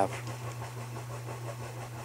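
A steady low hum over a faint even hiss, with no other event.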